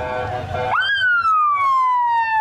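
Police car siren starting about three-quarters of a second in, with a sharp rise in pitch and then a long, slow fall, after a steady lower tone.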